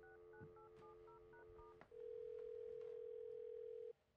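Corded telephone heard through the handset: a steady dial tone under a quick run of about seven touch-tone key beeps, then a click and the ringback tone, one steady tone that sounds for about two seconds and cuts off as the number rings through.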